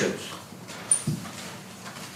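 A pause in a man's speech: quiet room background, with one short faint sound about a second in.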